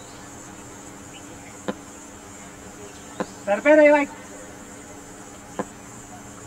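A steady high-pitched insect buzz, like cicadas, runs under the open-air ground. Three sharp clicks come through it. About halfway there is a short wavering shout, the loudest sound.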